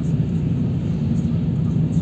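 Steady low rumble of a car driving, heard from inside the cabin: engine and tyre noise on a wet, slushy road.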